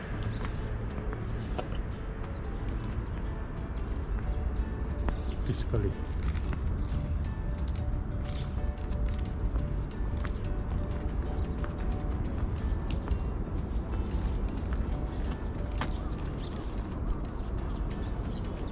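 Wind buffeting the camera microphone, a steady low rumble with scattered small clicks, and faint music underneath.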